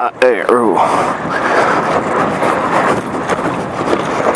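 Yamaha WR250R single-cylinder dirt bike running steadily as it rides down a rough, rocky trail, picked up by a helmet camera. The rider grunts with effort in the first second.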